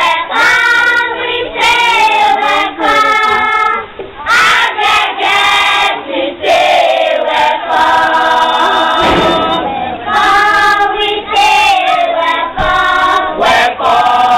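A group of voices singing together in short phrases, with brief breaks between them.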